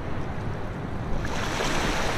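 Ocean surf washing onto a rocky shore: a steady rushing noise that grows slowly louder.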